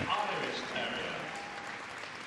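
Arena audience applauding, a steady wash of clapping that slowly fades.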